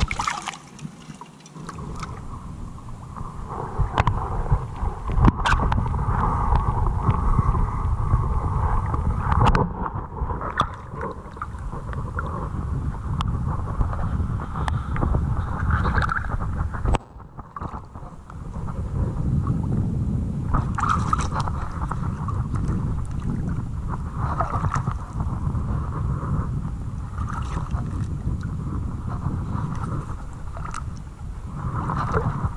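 Lake water sloshing and churning around a wader's legs as he moves through it, with wind buffeting the microphone. The sound dips briefly about two-thirds of the way through.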